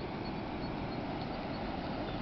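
Steady outdoor noise with no distinct events, chiefly wind buffeting the microphone.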